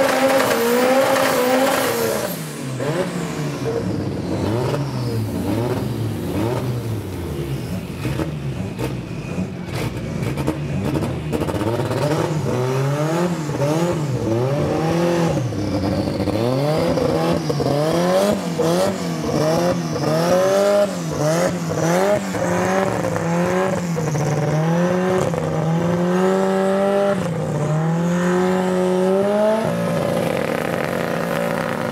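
A Ford Escort Mk1 drag car's engine held at high revs with spinning tyres, ending its burnout about two seconds in. The engine then idles and is blipped over and over, revs rising and falling every second or two as the car rolls back and stages, and is held at a steadier raised rev near the end.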